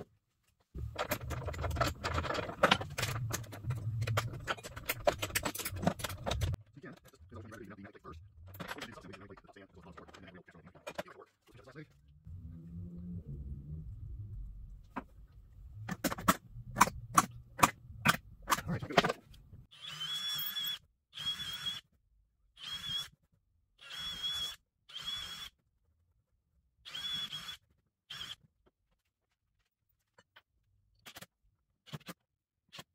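Workshop clatter of tools and screws being handled, with garbled talk, then a run of about seven short, high-pitched whirring bursts from a cordless drill/driver running in quick trigger pulses.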